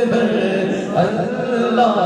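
A man singing a naat through a microphone, a devotional melody with long, wavering held notes.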